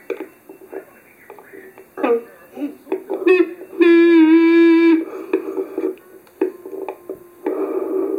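A young child singing into a toy karaoke microphone: short broken sounds at first, then one loud note held for about a second midway, then more singing near the end.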